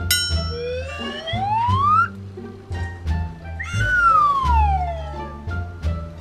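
A whistle-like sound effect slides upward for about a second and a half, then after a pause a second one slides back down, laid over background music with a repeating plucked bass line.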